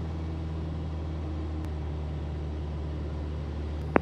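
RV-8 single-engine airplane's piston engine and propeller in flight, a steady low drone heard inside the cockpit.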